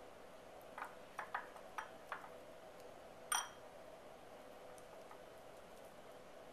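Quiet, light clicks and taps as sliced strawberries are picked from a glass bowl and laid on a tart, about five small ones in the first two and a half seconds. A little after three seconds comes one brighter clink that rings briefly. A faint steady hum sits underneath.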